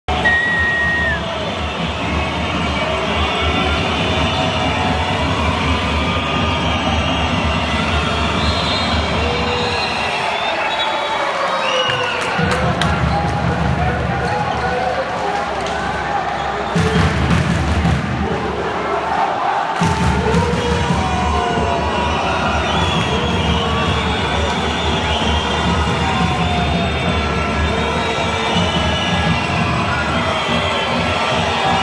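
Basketball arena sound: a crowd's voices and cheering over loud music with a steady beat, with a ball bouncing on the court. The music's beat drops out briefly a few times.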